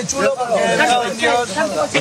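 Speech: men's voices arguing in Spanish, one repeatedly warning the other not to insult him.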